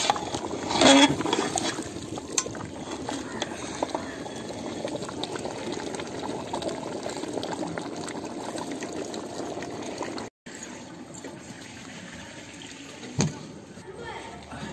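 Chicken and gravy bubbling in a large aluminium pot over a wood fire, with a ladle clattering against the pot about a second in. The sound cuts off suddenly about ten seconds in, giving way to a quieter hiss and a single knock near the end.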